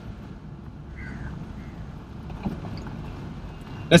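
Low steady cabin rumble of a moving BMW 640i Cabriolet with its roof closed, with a faint click about two and a half seconds in.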